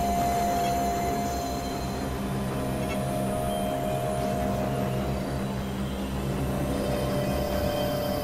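Experimental synthesizer drone music: a steady, dense low rumble under a sustained mid tone that drifts slightly lower in pitch, with thin warbling high tones above.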